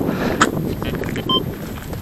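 Wind buffeting the microphone while a shovel digs into loose ploughed soil, with one sharp click about half a second in. A brief faint electronic beep, likely from the metal detector, sounds about a second in.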